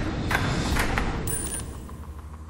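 A large metal counter dropping down through the pegs of the Tipping Point coin-pusher machine: a few sharp knocks and clinks as it strikes pegs, then a high ping a little over a second in. A steady low machine hum runs underneath.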